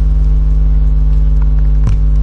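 Loud, steady low hum of room noise, with a short knock near the end.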